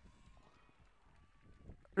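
Faint, irregular hoofbeats of racehorses galloping on turf, heard low and quiet.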